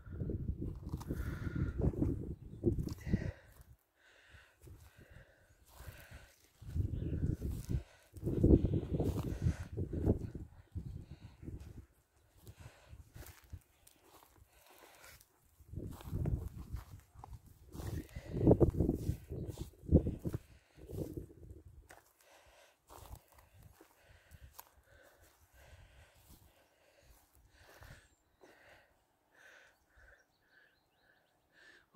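Wind gusting on the microphone in three long rumbling surges, with footsteps on grass and rough ground between them.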